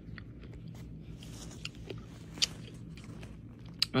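A person chewing a mouthful of granola-topped smoothie bowl, with faint crunching and scattered small clicks and one sharper click about two and a half seconds in, over a steady low hum.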